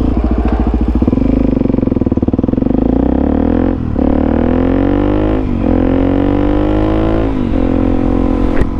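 Suzuki DR-Z400SM's single-cylinder four-stroke engine pulling away at low revs, each firing pulse audible, then accelerating through the gears. Its pitch climbs in each gear, with three brief breaks for upshifts at about four, five and a half and seven seconds in.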